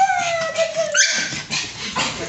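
Pug whining: one long high whine that falls slightly in pitch, then a short sharp yelp about a second in.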